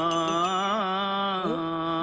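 A man's voice held in one long, steady hum on a single low note, like a chant, wavering briefly near the middle and again near the end.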